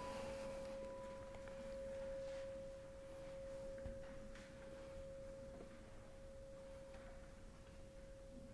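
A singing bowl ringing on after being struck, one long steady tone, its higher overtone dying away in the first second or so.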